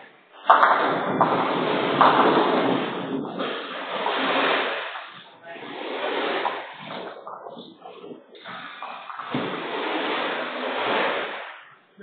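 Nine-pin bowling balls rolling along several lanes and striking pins, coming in surges of rolling noise with a sharp knock about half a second in.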